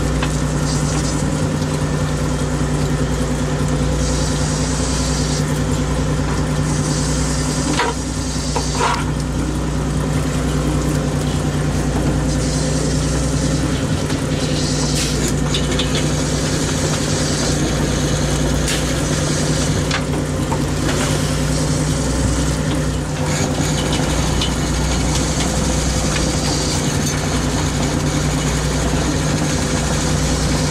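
Inshore fishing boat's engine running steadily, a constant low drone with a steady hum. Hiss comes and goes over it, with a few light knocks about eight seconds in.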